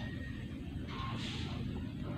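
Faint scraping of a blade stripping the insulation off an electric fan's motor wire, a short hiss about a second in, over a steady low background hum.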